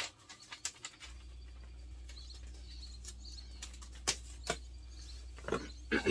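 Packaging being handled: a few rustles and clicks, then two sharp knocks about four seconds in, over a steady low hum that starts about a second in.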